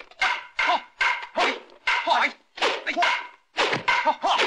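A quick run of fighters' shouts with dubbed strike sound effects, about two bursts a second, in a kung fu fight scene.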